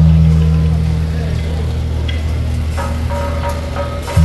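Temple-procession street din: crowd voices over a steady low engine-like hum. A held note from the beiguan band's wind instruments comes in a little before the end.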